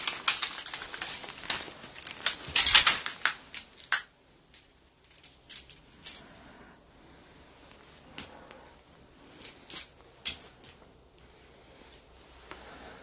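Clattering and rustling of objects and debris being moved, dense for the first four seconds, then scattered clicks and taps.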